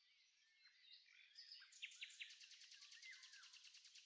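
Faint birds chirping and whistling. About halfway through, a fast, even trill of roughly a dozen pulses a second sets in, with a few sharp high calls over it.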